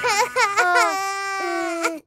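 Baby-like crying voice of a cartoon red balloon character: a few quick sobs, then one long wail that stops suddenly near the end.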